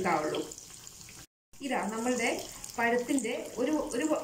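A woman talking over battered banana fritters deep-frying in hot oil, a faint sizzle under her voice. The sound cuts out for a moment a little over a second in.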